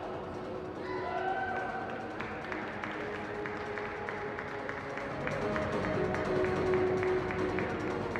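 Music playing over an arena sound system, with a steady beat that comes in about two seconds in.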